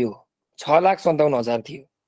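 Speech: a man talking in two short phrases, with a brief pause between them.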